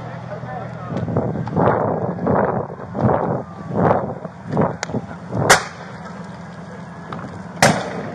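Hard breathing of someone running, about one breath every 0.7 s. Then two loud, sharp cracks about two seconds apart as the burning vehicle comes close.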